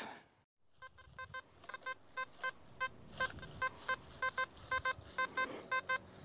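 XP metal detector sounding its target tone: short, fairly high beeps repeating every quarter to half second, often in pairs, as the coil is swept back and forth over a buried target. The signal gives a target ID of mid 70s to low 80s.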